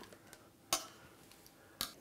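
Two short, sharp clicks of metal serving tongs and a knife against a plate, about a second apart, the first louder.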